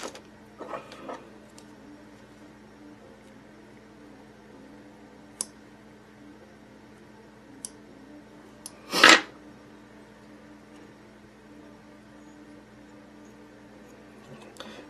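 A few sharp ticks of fly-tying scissors snipping bucktail hair over a steady low hum, with one louder short rush of noise about nine seconds in.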